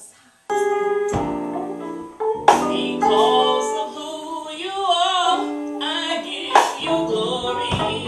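Music: keyboard chords start abruptly about half a second in, and a woman's singing voice comes in over them about two and a half seconds in.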